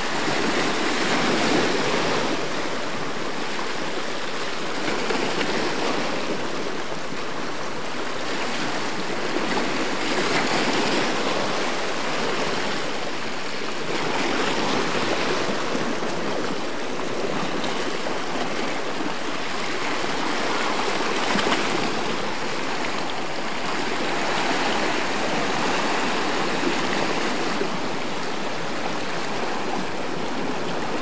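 Small sea waves washing over shoreline rocks close by: a steady rush of water that swells and falls every few seconds.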